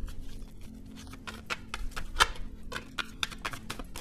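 Tarot cards handled and flipped from the deck: an irregular run of light clicks and snaps of card stock, with a faint steady low tone underneath.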